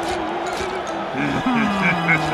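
Cartoon character's wordless vocal sounds over light background music. There is a wavering held tone at first, then falling low vocal glides from about a second in.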